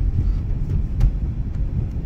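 Steady low road and engine rumble inside a moving Subaru car's cabin, with one sharp click about a second in.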